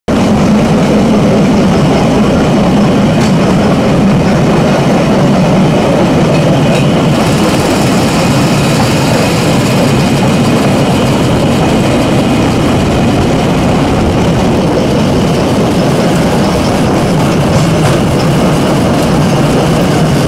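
A small engine-driven rail trolley running steadily under way, its engine and steel wheels on the track making a continuous loud rumble.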